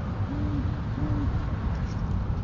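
Great horned owl giving two short, low hoots in quick succession, over a steady low rumble of wind on the microphone.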